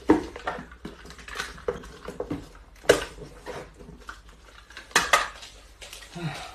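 Small cardboard boxes being handled and set down on a tiled floor: sharp knocks and clatters with rustling between. The loudest knocks come at the start, about three seconds in, and twice close together near the end.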